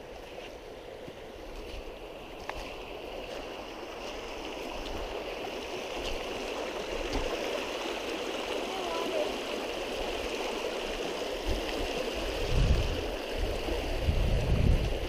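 Shallow mountain creek rushing over rocks in riffles, a steady rush that grows gradually louder. Low rumbles come in near the end.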